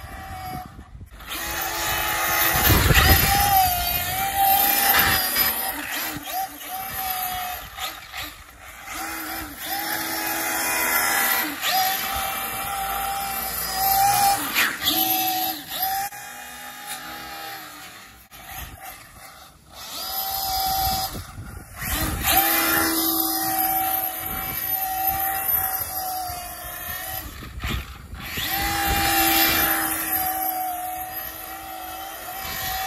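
Arrma Infraction 8S brushless electric RC car driving fast on wet asphalt: a high motor and drivetrain whine that rises and falls with the throttle over a hiss, swelling each time the car passes close and fading as it drives away.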